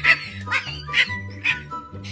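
A woman laughing hard in short high-pitched bursts, about two a second, over background music with a steady bass line.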